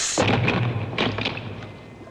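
Sound effect of a small figure dropping down a drain into water: a sudden splash and thud with a low rumble, a second splash about a second in, then fading away.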